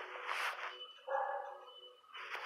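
A dog barking in a kennel, one short noisy burst a third of a second in and a stronger bark about a second in.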